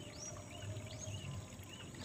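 Faint, high, short chirps of a small bird, several in a row, over a low steady outdoor background hiss.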